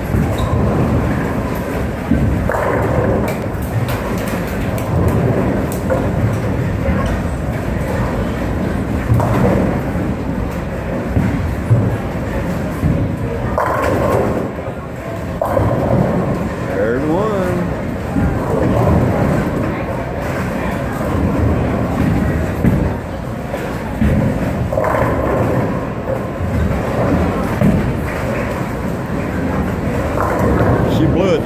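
Bowling alley din: many voices chattering over a steady low rumble of balls rolling down the lanes, with now and then a thud or crash of balls and pins.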